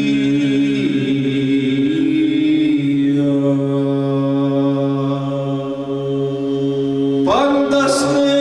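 Unaccompanied male Byzantine-style chant: a solo voice sings over a steady low drone held by a group of male voices. The solo line turns briefly at first, then holds one long note; about seven seconds in the voices break and move to a new note with a rising glide.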